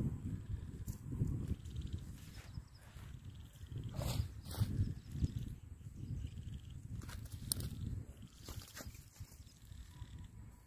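Wind buffeting the microphone: an uneven low rumble that rises and falls, with a few sharp clicks about four to five seconds in and again near the end.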